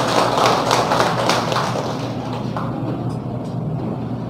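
Audience applauding, a dense patter of many hands clapping that thins out and grows quieter over the second half.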